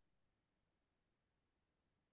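Near silence: digital silence on a video call between speakers, with no sound above a very faint noise floor.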